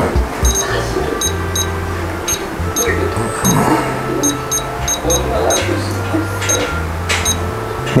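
Short electronic key beeps from a Futaba T14SG radio-control transmitter as its buttons are pressed, well over a dozen in an irregular run, over background music with a steady bass line.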